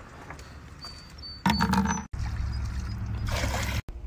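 Liquid pool chlorine pouring from a plastic jug and splashing into water, in short snippets broken by abrupt cuts, with a louder stretch about halfway through.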